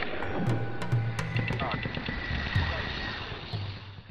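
Intro sound collage: music with short snatches of voice and sharp clicks, fading out near the end.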